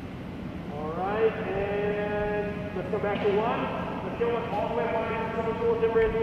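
A voice calling out in long, drawn-out tones, several of them, each rising in pitch at its start.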